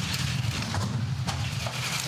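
Two-man bobsled sliding down the ice track at about 120 km/h, its steel runners making a steady low rumble with a few faint ticks.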